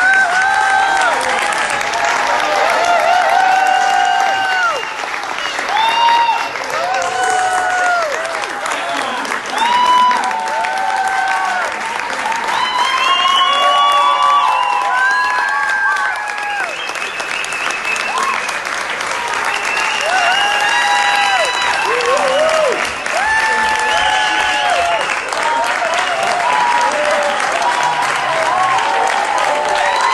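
Audience applauding and cheering: steady clapping throughout, with many voices calling out and whooping over it.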